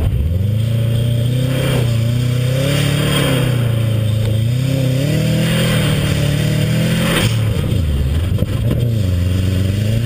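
Subaru WRX's turbocharged flat-four engine revving up and down as the car is driven hard on snow. The revs climb at the start, rise and fall, drop sharply about seven seconds in, then climb again near the end.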